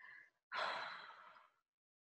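A woman's sigh: a faint short breath, then a breathy exhale of about a second that trails off.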